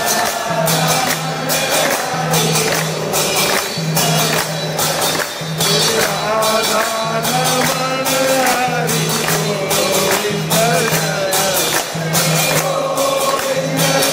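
Devotional aarti singing by a crowd, accompanied by a dholak drum and the steady, ringing beat of hand cymbals (jhanj) with clapping.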